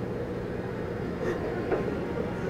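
A steady low rumble, with a woman's faint sobbing about halfway through.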